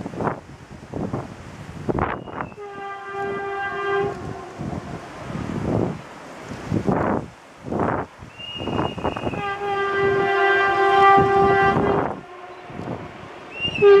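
Horn of a Renfe series 447 electric commuter train sounding twice: a short blast about two and a half seconds in, then a longer one of about two and a half seconds from about nine and a half seconds in, each led by a brief higher note.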